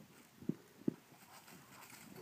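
Two faint, short soft knocks about half a second apart against a quiet outdoor background.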